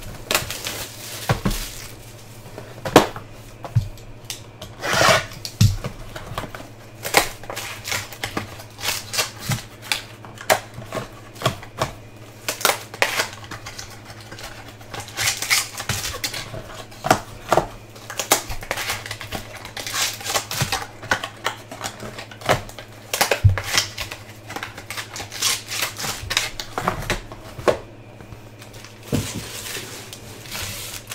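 A sealed box of trading cards being opened and its packs and cards handled: irregular clicks, taps and brief rustling and crinkling of wrapper, cardboard and card stock.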